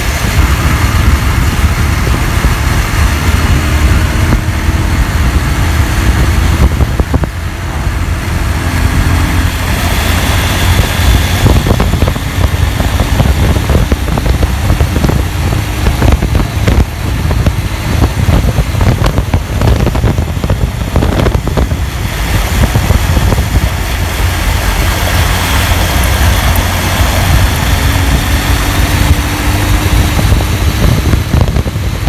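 Motorcycle cruising at highway speed, around 90 km/h, its engine and road noise under a heavy, steady rumble of wind on the microphone.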